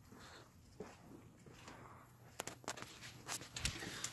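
Faint footsteps on pavement, then a few light, sharp clicks and knocks in the second half, like items being handled.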